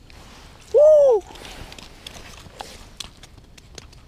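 A short, loud vocal sound, rising then falling in pitch, about a second in, followed by scattered faint clicks and taps of fishing gear being handled on the ice.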